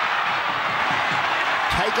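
Stadium crowd noise: thousands of spectators cheering in a steady, dense din, with a commentator's voice coming in near the end.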